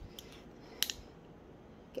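A hand handling a resin coaster, with one short, faint crisp scratch a little under a second in, like a fingernail picking at a hair on the hard resin surface, over a low room hiss.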